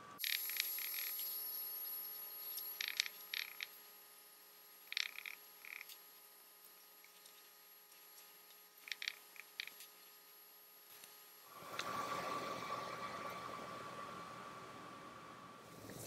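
Faint light taps and clicks from small EVA foam craft pieces being handled and pressed down on a cutting mat, in a few short clusters, over faint room hiss that returns for the last few seconds.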